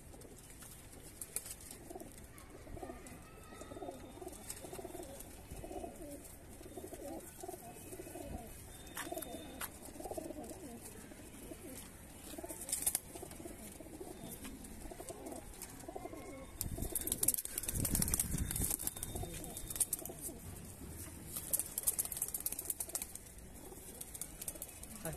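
Teddy high-flyer pigeons cooing, a string of low repeated calls one after another, with a louder burst of rustling noise about seventeen seconds in.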